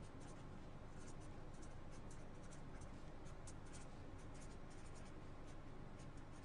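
Marker pen writing on paper: a run of faint, short scratching strokes as the letters of a heading are written.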